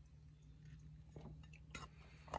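Near silence: faint wet mouth and finger sounds as a nicotine pouch is tucked under the lip, with a couple of soft clicks and a low steady hum.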